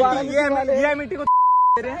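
A single steady 1 kHz censor bleep, about half a second long, cutting into men's talk a little past a second in; all other sound drops out while it sounds, bleeping out a spoken word.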